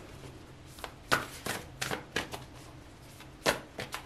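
A deck of large tarot cards being shuffled by hand: a string of short, irregular papery slaps and clicks as the cards fall together.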